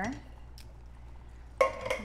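A little water poured from a glass jar into the stainless steel inner pot of an Instant Pot full of chili, a faint trickle. A sharp clink comes near the end, followed by a voice.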